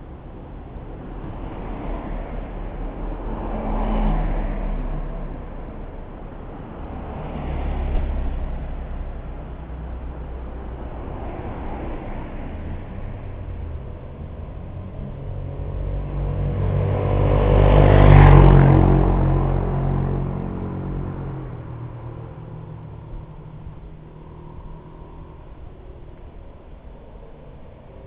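Road traffic: cars passing close by one after another, each swelling and fading, the loudest about eighteen seconds in with a low engine hum.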